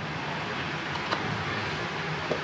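Steady background hum and noise, with one short light click about a second in.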